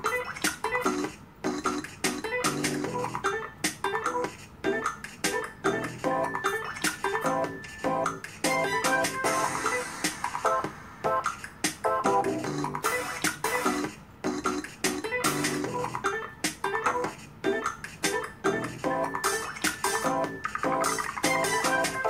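An unreleased, self-produced instrumental track with a steady beat, with no vocal melody written for it, played back through a device's speaker. It stops abruptly at the end.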